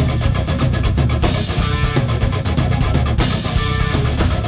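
Live rock band playing an instrumental passage: electric guitar over bass and a drum kit, with steady drum hits and cymbals.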